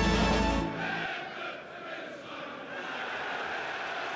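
The closing notes of an intro theme end about a second in, giving way to the steady hum of a football stadium crowd, with faint singing or chanting in it.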